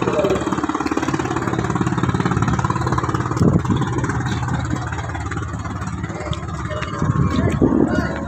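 An engine running steadily at idle, with voices in the background.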